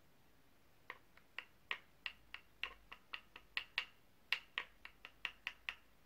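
An eyeshadow brush being tapped about twenty times in a quick series of sharp clicks, roughly four a second with a short pause midway, knocking loose powder off the brush to show the shadow's fallout.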